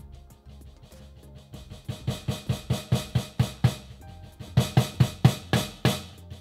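Snare drum sample from a Roland SPD-SX Pro sampling pad, triggered by a drumstick on a Roland PD-128S mesh pad: a run of strokes, very soft at first and then louder, about four or five a second, with a short pause about two-thirds of the way through. With the trigger threshold turned down to its lowest setting, even the softest strokes now sound, giving a wide dynamic range.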